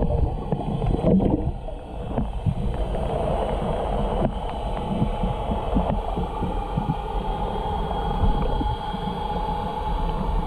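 Muffled, steady underwater rumble and gurgling of moving water, as heard through a submerged camera, with small scattered ticks.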